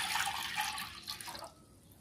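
Milk being poured from a bowl into a kadhai that holds a little water, a steady splashing pour that cuts off abruptly about a second and a half in.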